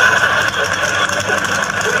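Steady droning hum and hiss from a worn, low-quality old recording, with a voice briefly near the end.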